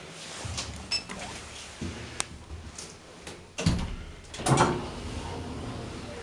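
KONE elevator car doors: a few light clicks, then the doors sliding shut with a thud about four and a half seconds in, followed by a steady low hum.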